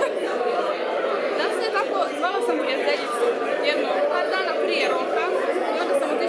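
Many people talking at once in a crowded room, a steady babble of overlapping voices in which no single speaker stands out.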